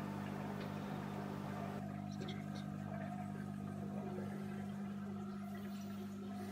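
Steady low machine hum of a room's equipment or ventilation, with a few faint clicks about two seconds in.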